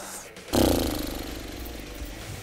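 An added sound effect between question and answer: a sudden noisy burst about half a second in that slowly fades away over a low rumble.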